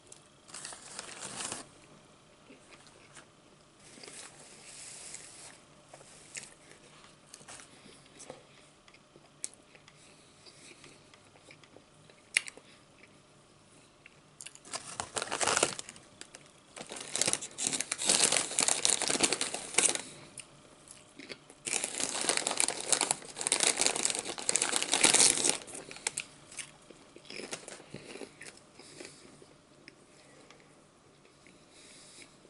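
A Lay's potato chip bag being crinkled and torn open, in two long, loud stretches of crackling in the second half. Before that come a brief bite and quieter chewing of a sandwich.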